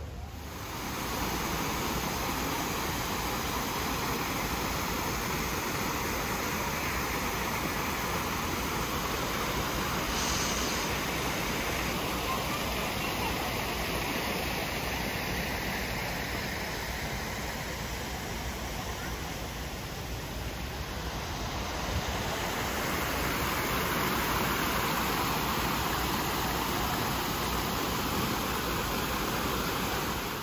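Steady rushing water of a small rock-garden waterfall: an even hiss, a little louder and brighter in the last third.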